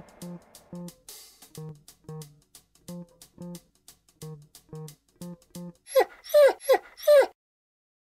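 A slow run of plucked guitar notes, about two a second, then four loud falling dog whimpers in quick succession about six seconds in.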